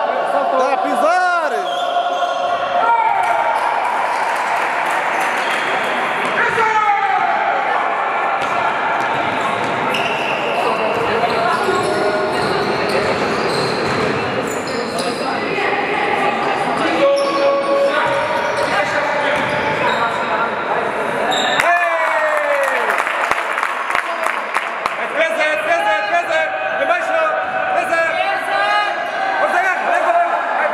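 Sounds of a basketball game in a reverberant sports hall: the ball bouncing on the court, sneakers squeaking in short sweeps, and players and spectators calling out.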